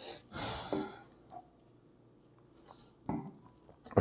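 A man breathing out for about a second while tasting a sip of beer, then quiet mouth sounds, with a short sharp one just after three seconds in.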